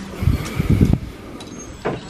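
Clothes being pushed along a clothing rack: hangers sliding and fabric rustling, with a few low bumps in the first second.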